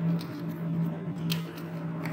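Computer keyboard keys being typed, a few separate clicks with one sharper keystroke about a second in, over a steady low hum.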